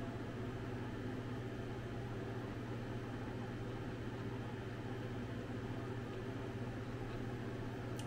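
Steady low mechanical hum with a faint even hiss: an unchanging room drone with no distinct events.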